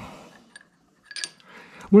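Light metallic clinks of a steel ejector pin against the jaws of a three-jaw lathe chuck as it is set in, a couple of sharp ticks about a second in.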